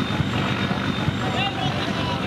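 A large engine running with a steady, throbbing rumble under the murmur of a dense crowd of passengers, with a faint voice about one and a half seconds in.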